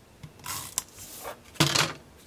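Paper and cardstock pieces being handled and pressed by hand: a short rustle about half a second in, then a louder, fuller rustle near the end.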